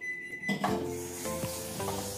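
Background music with a steady beat, and from about half a second in a kitchen tap running at the sink, a steady hiss under the music.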